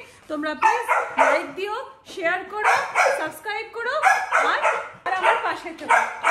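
A woman talking, with a dog barking in short bursts between and over her words.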